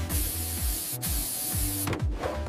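Gravity-feed paint spray gun hissing in two spurts, with a short break about halfway through, over background music.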